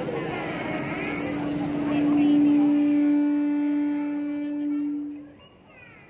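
Young children's voices through stage microphones, then one long steady note held for about four seconds that dies away near the end.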